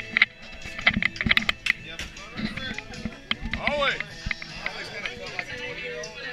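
People talking over music playing in the background, with frequent short clicks and knocks scattered through.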